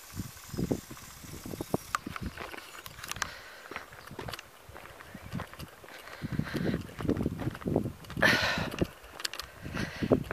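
Footsteps on a dirt track and rubbing of a handheld camera: irregular soft scuffs and knocks, with a brief louder hiss about eight seconds in.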